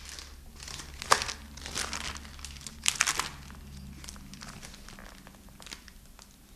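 Paper rustling and crinkling in a few short bursts as sheets are handled, the loudest about a second in and about three seconds in, over a low steady hum.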